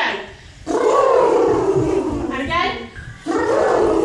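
Human voices making loud, drawn-out wordless sounds that slide up and down in pitch, in a few long calls, as in a vocal warm-up.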